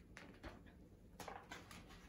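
Near silence with a few faint, short rustles and ticks: a picture book's paper page being turned by hand.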